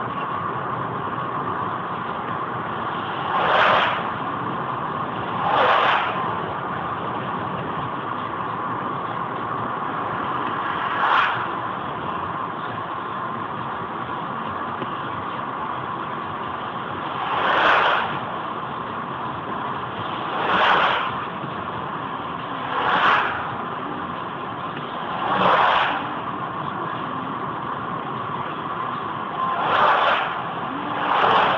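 Steady engine and tyre noise of a car cruising at about 80 km/h on a highway, picked up inside the car by a dashcam. Several brief whooshes of oncoming vehicles rushing past rise over it every few seconds.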